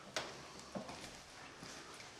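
Footsteps on a staircase: a few faint, separate steps, the first just after the start the sharpest.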